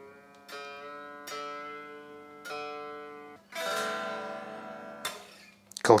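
Strings of an unplugged Harley Benton Stratocaster-style electric guitar plucked with a wooden pick, the thin acoustic ring of an unamplified solid-body: three separate notes, each fading, then a fuller strum about three and a half seconds in that rings for over a second. The strings are plucked while the tuning pegs are turned by hand to check that they work.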